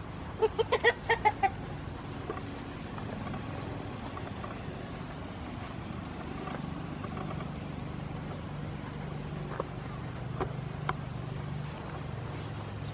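A chicken clucking: a quick run of about seven clucks lasting about a second near the start, over a steady low background hum.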